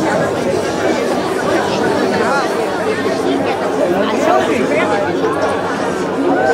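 Crowd of spectators chattering, many voices overlapping at a steady level.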